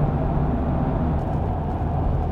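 Steady rumble of a vehicle driving along, road and engine noise with a low hum and no changes.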